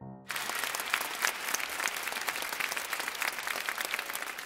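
Crowd applauding: many hands clapping, starting about a third of a second in and going on steadily.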